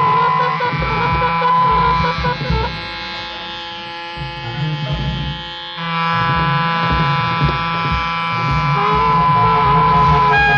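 Post-punk art-rock band recording: a dense, droning wall of held tones over a low, uneven pulse. It thins out and drops quieter about three seconds in, then comes back in full suddenly near the six-second mark.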